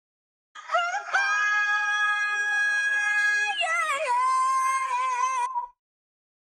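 Isolated female lead vocal, stripped from the band, holding one long note at a dead-steady pitch, then sliding down to a lower note about three and a half seconds in that wavers slightly before cutting off. The unnaturally flat hold is what the listener takes for pitch correction.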